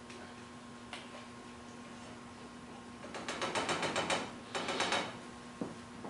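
Rapid ratchet-like mechanical clicking, about ten clicks a second, in two short bursts: one lasting about a second, then a half-second one after a brief pause. A single light knock comes near the start and another near the end.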